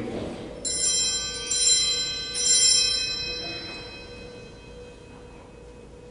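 Altar bells (sanctus bells) rung three times, about a second apart, with a bright jangle of many high tones that dies away slowly. They mark the elevation of the consecrated host.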